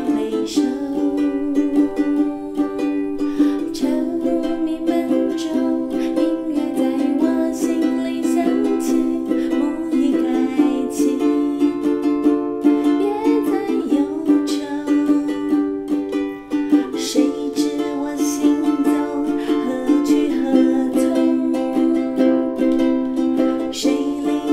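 Ukulele strummed in a steady folk-rock rhythm, its chords changing every few seconds.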